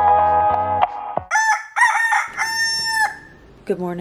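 Guitar music cuts off about a second in. Then a rooster crows once, a long cock-a-doodle-doo that ends on a held note and drops away, used as a morning wake-up cue.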